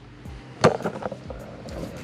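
A single sharp click or knock about two-thirds of a second in, followed by a few lighter ticks and faint handling noise.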